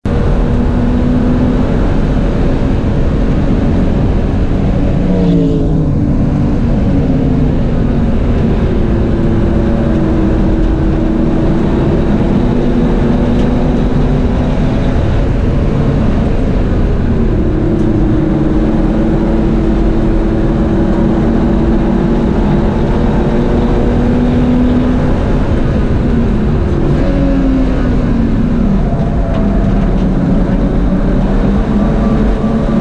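In-cabin sound of a BMW E30 race car's naturally aspirated M30 straight-six engine driven hard on track, under heavy wind and road noise. The engine note drops about five seconds in, climbs again about halfway through, and falls once more near the end.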